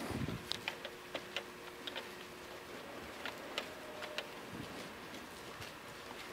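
Faint, irregular papery ticks and flicks from a congregation leafing through Bible pages to find a passage.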